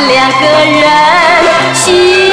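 A Mandarin pop song playing from a vinyl record: a woman sings held notes with vibrato over the band's accompaniment.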